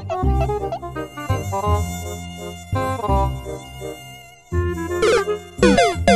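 Electric guitar played through effects: bent, sliding notes over a low bass line. It ends in a run of quick downward pitch slides, several a second.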